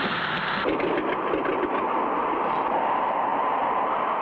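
Sound effect of a small propeller plane's engine droning steadily as the plane comes in to land, shifting slightly in tone a little under a second in.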